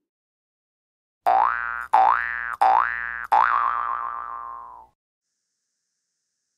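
A cartoon 'boing' sound effect repeated four times in quick succession, starting a little over a second in, each boing rising in pitch. The last one wobbles and fades out over about a second and a half.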